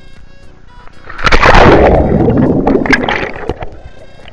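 A person jumping into a swimming pool: a sudden loud splash about a second in, then churning water and bubbling that fade over a couple of seconds, with background music underneath.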